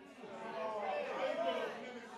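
Several audience voices talking at once, quieter than the amplified preacher.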